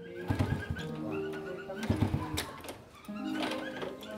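A small step-through motorbike being kick-started: three short metallic clatters of the kick-start lever about a second and a half apart, with no engine catching. A dead spark plug is suspected. Background music plays throughout.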